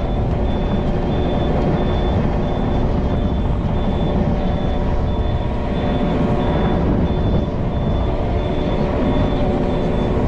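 Yanmar mini excavator's diesel engine running steadily with its hydraulics working as the bucket and thumb drag a log along a pond bank. A high beep repeats about twice a second over the engine.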